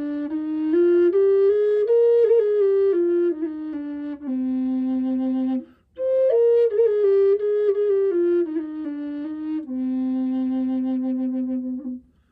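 Contrabass Native American-style drone flute of aromatic cedar playing a slow melody in C Aeolian with a clear, steady tone. It is two phrases that step up and back down, each ending on a long held low note, with a brief breath between them just before halfway.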